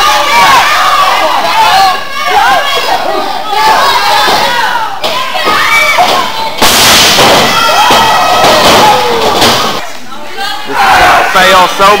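Wrestling crowd shouting, yelling and cheering close by, many voices at once, with a sudden louder burst of noise about halfway through.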